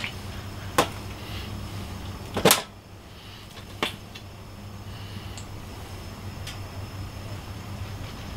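A few sharp clicks and knocks from handling utensils and a squeeze bottle of yellow mustard, the loudest about two and a half seconds in, over a steady low hum.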